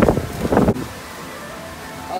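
Storm wind buffeting the phone microphone in loud gusts for the first moment, then settling into a steady rush of wind.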